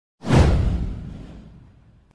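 A whoosh sound effect with a deep low boom, starting sharply a fraction of a second in, its hiss sweeping downward in pitch as it fades away over about a second and a half.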